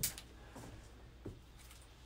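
Quiet small-room tone with a brief sharp click at the start and a couple of faint soft noises.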